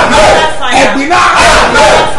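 A man praying aloud in a loud, fervent, shouting voice, the words not clear, with no pauses.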